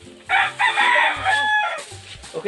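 A rooster crowing once, a loud call of about a second and a half that trails off at the end.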